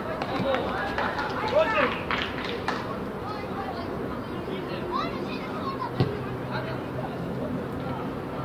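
Children and adults calling and shouting across a youth football pitch during play, with one sharp knock about six seconds in.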